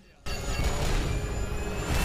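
Soundtrack of an animated show: a dense crash-and-explosion rumble under background music, starting abruptly about a quarter second in after a brief hush.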